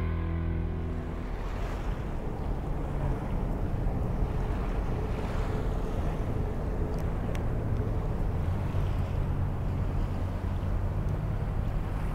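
The song's last sounds fade out in the first second, leaving outdoor waterside ambience: a low, uneven rumble of wind on the microphone over a steady wash of noise.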